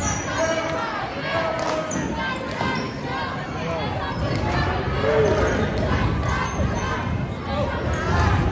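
A basketball dribbled on a hardwood gym floor during play, with short high sneaker squeaks and voices calling out, all echoing in the gym.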